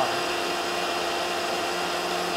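Electric kitchen blender running steadily, a continuous motor hum with a few held tones, as it blends a cooked-lentil kofta mixture.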